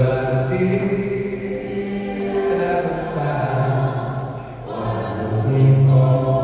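Gospel choir singing long held chords in harmony. It comes in loud at the start, dips about four and a half seconds in, and swells again near the end.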